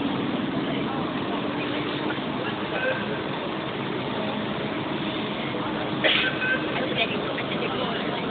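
Fire engines idling in the street: a steady engine rumble under general traffic noise, with indistinct voices in the background and a brief sharper sound about six seconds in.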